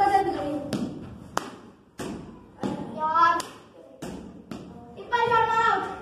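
Several sharp knocks of a ball being struck by a wooden cricket bat and bouncing off the floor and walls in a room during indoor cricket, the loudest about a second and a half in.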